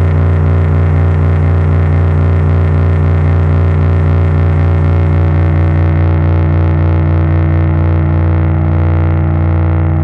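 A steady, loud electric bass drone run through effects pedals, with a strong low tone and many layered overtones. From about six seconds in, its high end gradually fades away as the pedal settings are turned.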